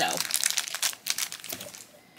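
A small clear plastic bag crinkling in the fingers as it is opened to get a game die out. The crinkles come thick in the first second, then thin out and stop.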